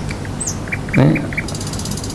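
Small birds chirping in the background: short, high, darting chirps, with a quick run of about five piping notes around the middle, over a steady low hum.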